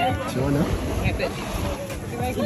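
Background voices of people talking, over a steady hiss of wind on the microphone and surf.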